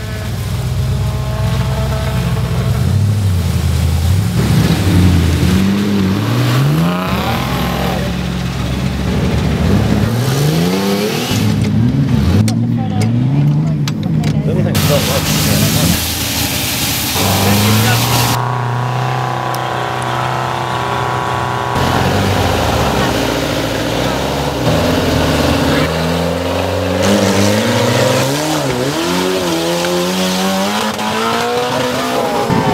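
Off-road 4WD truck engines revving again and again, the pitch climbing and dropping with each burst of throttle as they work through mud, in short clips cut together, with a steadier stretch of running about two-thirds of the way in.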